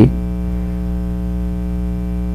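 Steady electrical mains hum with a ladder of evenly spaced overtones, fairly loud and unchanging.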